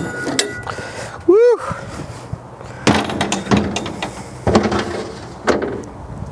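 Metal smoker door opened, with a short squeak about a second and a half in, then a steel grate rack slid out of the cabinet, scraping and rattling with sharp clicks.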